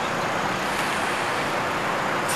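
Steady outdoor background noise, an even hiss and low rumble with no distinct events.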